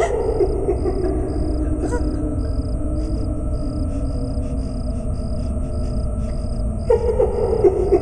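Horror-film sound design: a steady low rumbling drone, with a faint short high pulse repeating about twice a second. Wavering moan-like tones come in near the start and again about seven seconds in.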